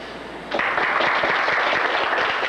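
Audience applauding, starting suddenly about half a second in and continuing steadily.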